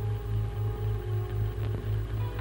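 Background film score: one note held steadily over a low hum that pulses evenly, about three times a second.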